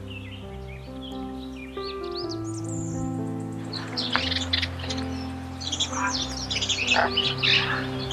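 Background music with slow, held notes, over many birds chirping and calling in short, quick notes. The calls grow busier and louder about halfway through.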